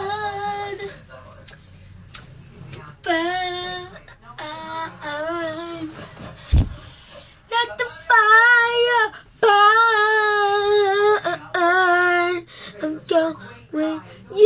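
A child singing several phrases of long held notes with a wavering pitch, in a small room. A single dull thud about six and a half seconds in.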